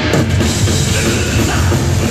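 Hardcore punk band playing live and loud: distorted electric guitar over a pounding drum kit and bass, thickening into full-band playing just after the start.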